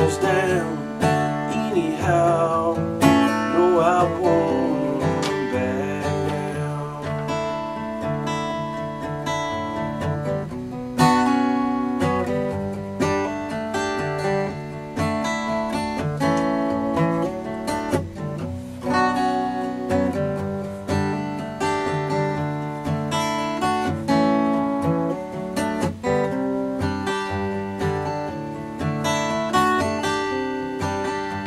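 Solo acoustic guitar playing an instrumental passage at the close of a country song. A louder, sharper chord comes about 11 seconds in, and the playing eases off slightly toward the end.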